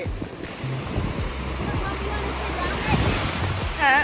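Ocean surf breaking and washing around the legs in shallow water, a steady rushing that swells about three seconds in, with background music underneath.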